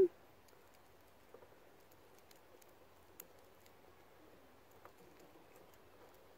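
Faint, sparse clicks of chicken wire being bent and teased into shape by hand, the sharpest about three seconds in.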